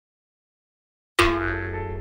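Silence, then a little over a second in a sudden cartoon 'boing' sound effect: one ringing, many-toned hit that fades away.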